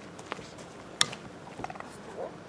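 Light clicks and knocks as a dog steps along a low wooden agility plank, with one sharp click about a second in, the loudest sound here.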